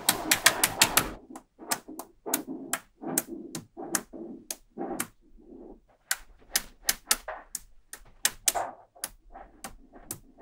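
Small magnetic balls clicking and snapping together as bars of them are set down and pressed onto a slab of magnet balls on a hard tabletop. A quick run of clicks comes in the first second, then scattered clicks with softer rattling between them.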